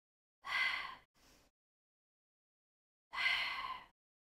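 A woman breathing out audibly twice, about two and a half seconds apart, with a faint short breath in after the first. It is controlled Pilates breathing paced to slow leg circles.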